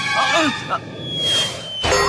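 Short strained vocal cries over background music. They are followed by a thin, slightly falling whistle lasting about a second, which ends in a thump near the end.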